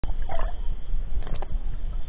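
Muffled low rumble and gurgling of shallow sea water heard by a camera held underwater, with a few short clicks.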